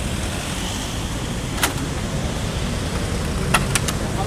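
Mercedes-Benz G-Class V8 idling at the kerb with a steady low rumble. There is a sharp click after about a second and a half, then a quick run of three clicks near the end as the rear door handle is pulled and the latch opens.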